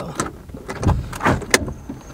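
Car passenger door being opened and someone climbing into the seat: a run of clicks and knocks over the car's low interior hum, the sharpest click about one and a half seconds in.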